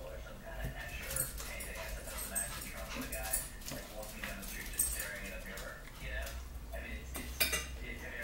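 Metal forks clinking and scraping against plates as two people eat, in scattered sharp taps, the loudest one near the end.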